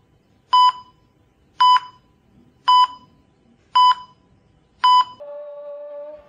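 Electronic heart-rate monitor beeping, five short identical beeps about a second apart. A steady held tone starts near the end.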